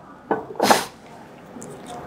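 Glass lid set back onto a glass jar: a light knock, then a short gritty scrape as the lid seats on the rim.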